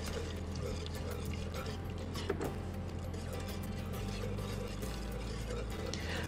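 Milk poured slowly from a glass jug into a pot of butter-and-flour roux while it is stirred, a faint steady pouring sound, under quiet background music.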